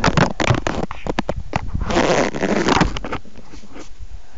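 Handling noise from a tablet recording its own movement as it is shifted on its tripod: a rapid run of knocks, clicks and rubbing close to the microphone, with a longer scraping rush about two seconds in and a few fainter clicks near the end.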